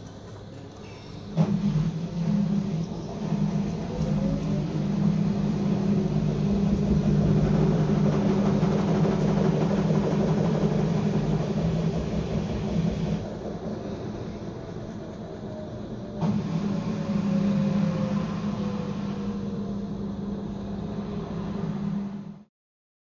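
A loud, steady mechanical rumble with a low drone and faint sliding whines, like a passing train or heavy vehicle. It starts suddenly about a second and a half in, eases off for a few seconds past the middle, then comes back.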